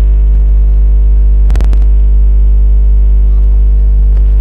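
Loud, steady electrical mains hum with a ladder of overtones in the announcer's sound system, with a brief crackle about a second and a half in.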